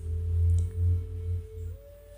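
A soft, steady pure tone that holds one pitch, then slides up a little near the end, over a low rumble that swells and dips.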